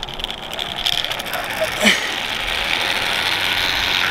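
Zip line trolley pulleys running along the steel cable: a steady whirring hiss with fast fine clicking that grows louder as the rider picks up speed. A short sharp sound comes about two seconds in.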